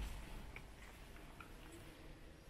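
Quiet room tone of a large stone church nave, with a few faint, soft ticks.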